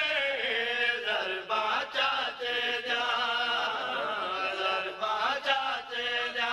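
Male voice chanting a Saraiki devotional qaseeda in long held, wavering melodic lines.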